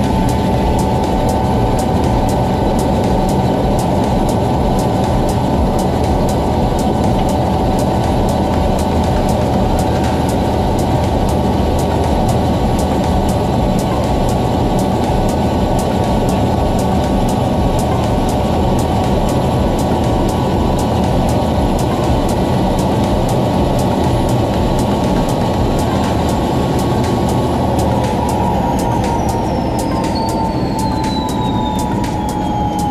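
Helicopter turbine engine and rotor running steadily, heard from inside the cabin as a dense drone with steady whines above it. Near the end a high whine slides downward in pitch.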